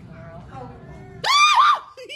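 A person's high-pitched startled scream, starting about a second and a quarter in and lasting about half a second, its pitch rising and falling twice. Faint background chatter comes before it.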